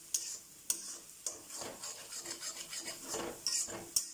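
Spatula stirring and scraping frying egg, onion and tomato around an aluminium kadai, with about five sharp knocks of the spatula against the pan. A light sizzle runs underneath.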